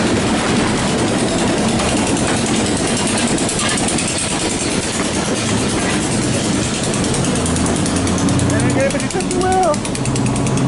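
Maryland Midland diesel locomotives, including an EMD GP38-3, running as they pass close by on the track, with their engines and wheels on the rails making a steady loud din. A steadier low engine drone comes through in the last few seconds.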